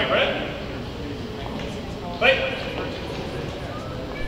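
Two short, indistinct calls from a person's voice, one at the start and one about two seconds in, over steady background chatter in a gym hall.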